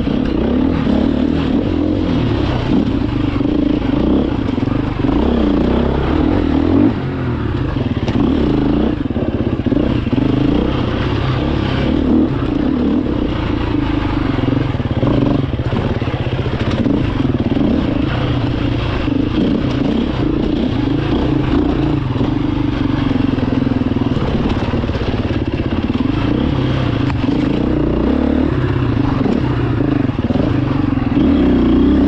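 Husqvarna enduro motorcycle engine running under load on a rough trail, its revs rising and falling with the throttle, with a brief drop in level about seven seconds in.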